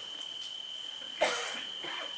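A man coughs once, sharply, a little over a second in, over a steady high-pitched whine in the background.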